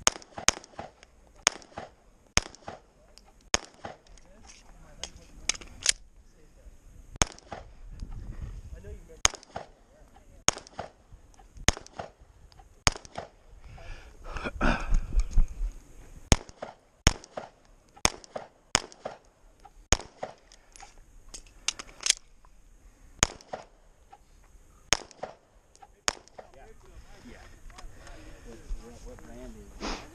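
Semi-automatic pistol fired at close range, about three dozen shots in strings with short pauses, many in quick pairs. The firing stops about 26 seconds in.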